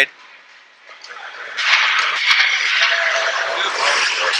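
Ice hockey rink ambience: quiet at first, then about a second and a half in a steady wash of crowd and rink noise comes up and holds.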